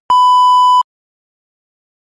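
A single steady TV test-pattern tone, the beep that goes with colour bars, held for under a second and cutting off sharply.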